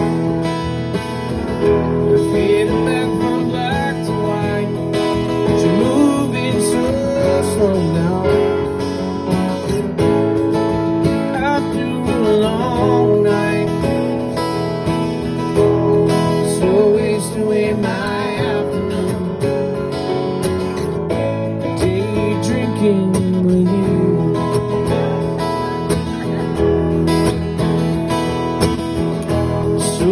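Live acoustic band playing an instrumental passage: two acoustic guitars strumming steady chords, with a melody line of gliding notes over them.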